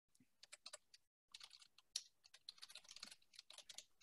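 Faint typing on a computer keyboard: a quick, uneven run of keystrokes with a short pause about a second in.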